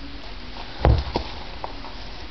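A single dull thump on a wooden workbench a little under a second in, followed by a couple of light clicks, as parts and a vinyl roll are handled and set down.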